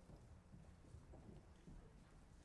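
Near silence: hall room tone with faint, scattered knocks and rustles from a seated audience.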